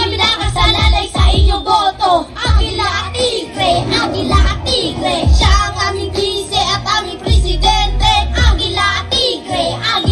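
Children rapping and singing into microphones over a hip hop backing track with a regular heavy bass beat.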